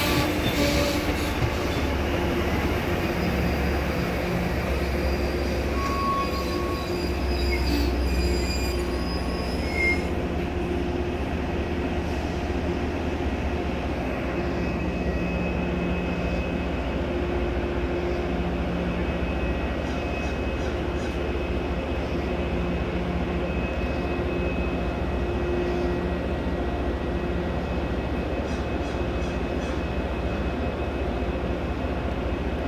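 MBTA commuter rail train of bilevel coaches running alongside the platform: a steady low rumble with the clatter of the wheels, which thins out about ten seconds in and leaves a steady drone with a faint high whine.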